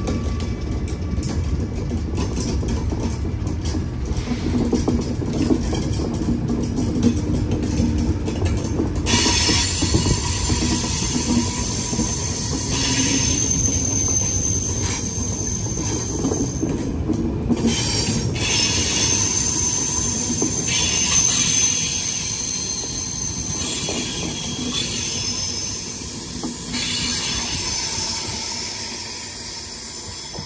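Passenger train coaches rolling past along the platform, with a steady rumble of wheels on rail and high-pitched wheel squeal from about nine seconds in. The sound eases off near the end as the last coach moves away.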